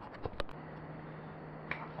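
A handful of sharp clicks in the first half second, from a camera being handled and set up, then a steady low hum.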